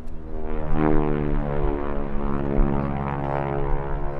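North American Harvard IV's Pratt & Whitney R-1340 Wasp radial engine and propeller in flight overhead, a steady drone that swells in about half a second in and dips slightly in pitch a second or so later.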